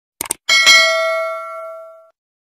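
Subscribe-button animation sound effect: a quick double mouse click, then a bright notification-bell ding about half a second in that rings on and fades away over about a second and a half.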